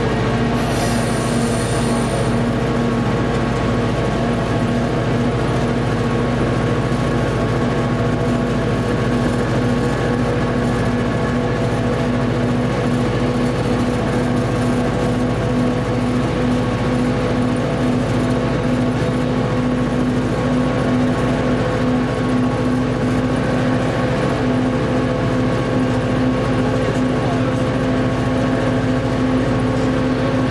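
Nohab diesel locomotive's EMD two-stroke engine running steadily under load, heard from inside the cab, with the rumble of the train running over the rails. About a second in, a brief high hiss.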